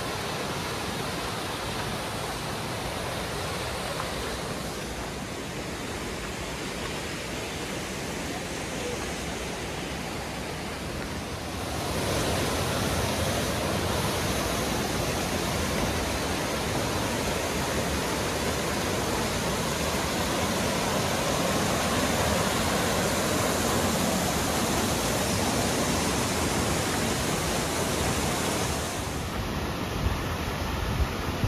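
Rushing water of a rocky mountain stream running over rapids and small cascades, a steady noise that grows louder about twelve seconds in and eases back a little near the end.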